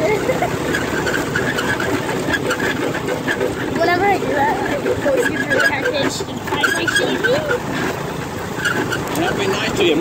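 Go-kart being driven over bumpy ground, a loud, steady running noise of the kart with some wavering pitch about halfway through.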